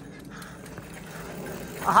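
Mountain bike rolling down a rocky sandstone chute past the camera: faint tyre rumble with a few light knocks over the rock. A man's voice cheers near the end.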